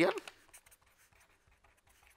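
Pen writing on paper: faint, scattered scratching strokes.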